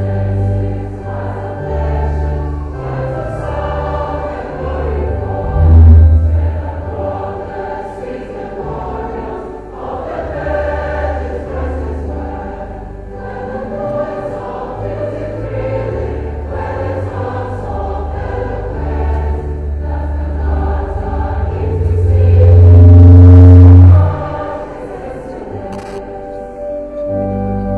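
Choir singing a hymn over organ accompaniment with strong sustained bass notes; a loud held low note swells near the end.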